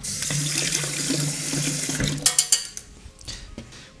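Water running from a kitchen tap for about two seconds, then stopping, followed by a few sharp clicks.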